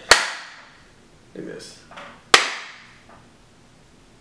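Two single sharp hand claps, about two seconds apart, each ringing briefly in a small room.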